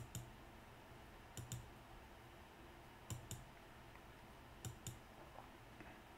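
Computer mouse button clicking four times, each a quick double tick, about every second and a half, against faint room hum.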